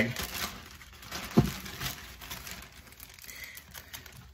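Plastic polybag crinkling and rustling as a hat is pushed into it, with a single knock about a second and a half in.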